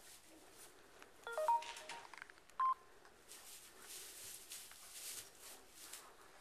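Electronic beeps like a phone keypad being pressed: a quick run of short tones at different pitches about a second in, then one higher beep a second later. Soft rustling of straw follows.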